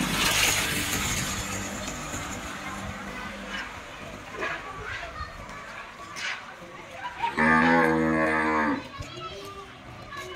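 A cow mooing once: a single long, low, steady call of about a second and a half, starting some seven seconds in.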